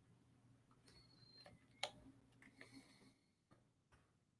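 Near silence with a few faint clicks of computer keys, the sharpest a little under two seconds in, over a low hum that fades out about three seconds in.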